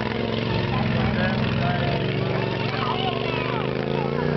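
Racing lawn tractor's engine running at a steady pitch as it circles the track, with spectators' voices underneath.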